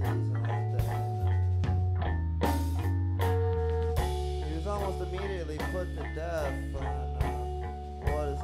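Indie rock band playing live: electric guitar over sustained bass notes and drums with cymbal hits.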